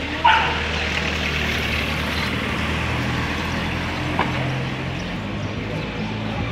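A dog barks once, sharply and loudly, just after the start, with a shorter sound, likely a second bark, about four seconds in, over a steady low hum of street background.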